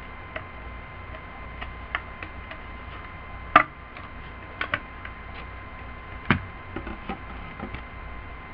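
Handheld stapler being pressed through a paper plate to fasten on a paper ear: a few separate sharp clicks, the loudest about three and a half seconds in and another strong one about six seconds in, with lighter ticks between.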